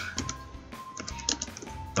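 Computer keyboard typing: several separate keystrokes, over faint background music.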